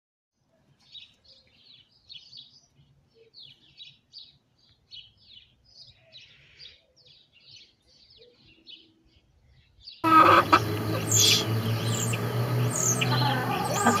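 Small birds chirping faintly in quick groups of short high notes. About ten seconds in, louder outdoor sound cuts in, with a steady low hum and chickens clucking and calling.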